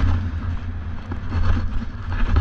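Wind buffeting a GoPro's microphone during a ski descent, a heavy low flutter, with skis hissing and scraping over the snow in short, rough surges.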